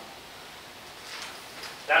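A pause in a man's talk: quiet room hiss with a faint rustle about a second in, then his voice starts again near the end.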